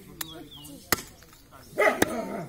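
Heavy cleaver chopping goat meat and bone on a wooden log chopping block: a light knock, then one loud sharp chop about a second in. Near the end a dog barks once.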